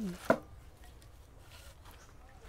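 A single sharp knock about a third of a second in, as a potted tree in a black plastic nursery pot is lifted off a display stand.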